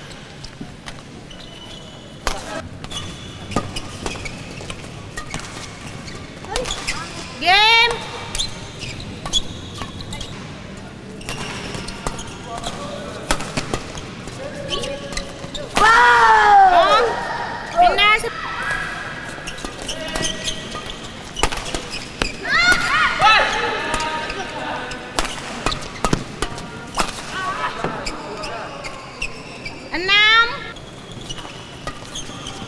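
Badminton play on an indoor court: sharp racket strikes on the shuttlecock and short squeaks and shouts, with the loudest burst about 16 seconds in, over steady hall chatter.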